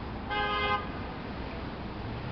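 A car horn honks once, a short toot of about half a second, over steady street traffic noise.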